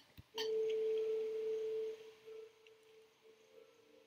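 A single steady pure tone starts about a third of a second in and holds loud for about a second and a half, then drops suddenly to a faint lingering ring as softer, lower tones come in near the end.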